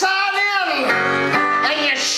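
Live country-style band music with plucked strings. A long note rises and falls in the first second, then held notes and chords follow.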